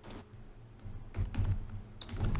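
Typing on a laptop keyboard: a few irregular key clicks, bunched together a little past the middle.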